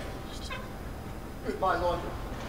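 A man's voice gives a short pitched cry, without words, about one and a half seconds in.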